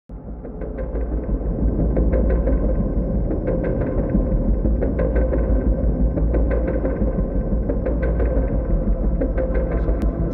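A low rumbling drone with scattered crackling clicks, fading in over the first two seconds, with a faint steady high tone held above it: an ambient electronic soundscape.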